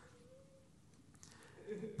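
A quiet pause in a man's speech, mostly low room tone, with a faint brief hum about half a second in and his voice coming back near the end.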